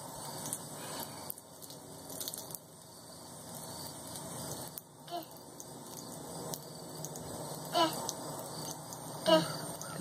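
Water trickling from a garden hose onto a concrete porch slab, a faint steady splatter. Two brief voice sounds come near the end.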